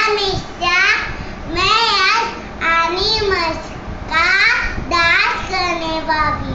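A young girl's voice in about five short phrases, each rising and falling in pitch, with brief pauses between them.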